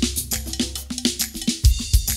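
Drum kit played fast: a dense run of stick strokes on drums and cymbals, with low drum notes underneath and two heavy low hits near the end.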